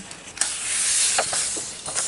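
A page of a paperback colouring book being turned over: a paper swish and rustle lasting about a second and a half, starting with a small flick about half a second in.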